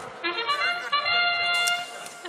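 FIRST Robotics Competition field's match-start sound played over the arena speakers: a trumpet-like bugle call marking the start of the autonomous period. It is a short note followed by one held for nearly a second.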